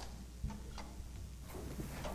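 Musicians handling and putting away guitars and stage gear: a few faint, scattered clicks and light knocks over a low steady hum.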